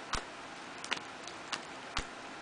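CD sleeves in a ring binder being flipped through by hand: a handful of light, sharp clicks as the sleeves snap past, the first just after the start the loudest.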